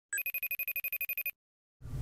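Electronic phone ring: a rapid trill of about a dozen identical short beeps in just over a second, which then stops.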